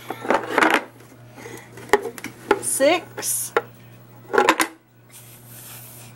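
A young boy's brief, effortful vocal sounds, a non-verbal child's attempts at saying numbers, with a few sharp taps or knocks in between.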